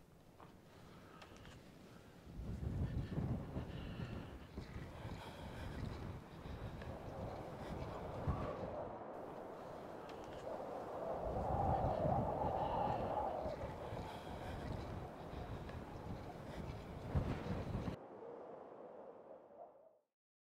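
Wind gusting over the camera microphone: uneven rumbling buffets that begin a couple of seconds in, swell and ease, then fade out shortly before the end.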